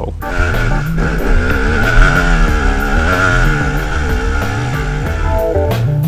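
Dirt bike engine revving on a steep hill climb, its pitch wavering up and down with the throttle, over background music.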